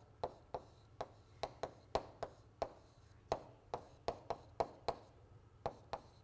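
Chalk tapping and scraping on a blackboard as an equation is written: a quick, faint series of sharp taps, about three a second, with a short pause near the middle.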